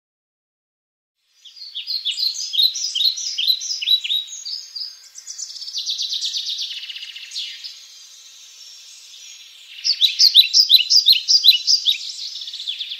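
Bird song: a string of high, quickly falling chirps, about three a second, that starts about a second and a half in after total silence, runs into a denser trill in the middle, fades, and returns louder near the end.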